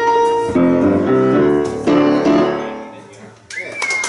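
Grand piano playing the closing chords of a song, the last chord fading away. Near the end a sudden louder burst of noise with a high held tone cuts in.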